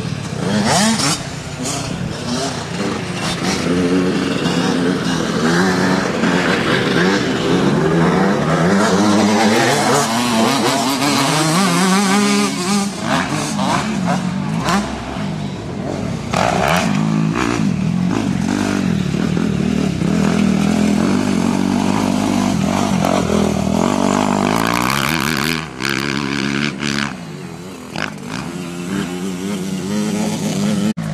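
Suzuki RM-Z four-stroke motocross bike revving hard around a dirt track, its engine pitch climbing and dropping over and over through gear changes and throttle blips. The engine noise dips briefly twice near the end.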